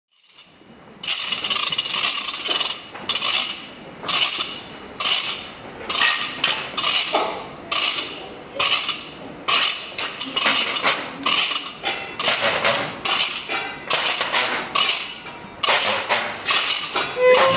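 Rhythmic rasping scrapes of wooden household props, a washboard and rakes, used as percussion. The strokes begin about a second in, come roughly once a second at first, and crowd closer together later.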